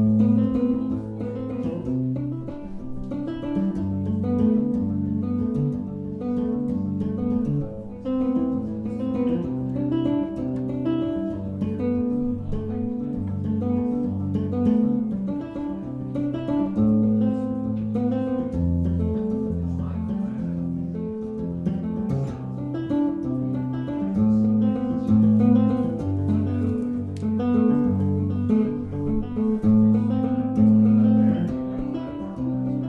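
Solo Zon electric bass guitar playing an instrumental piece: a low bass line under rapid plucked chords and melody in the upper register. The music starts abruptly at the opening and runs without a break.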